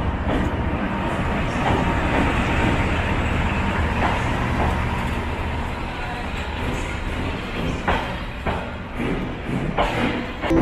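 Diesel locomotive passing close by, followed by passenger coaches rolling slowly in along the platform: a steady rumble with a few sharp clacks of the wheels.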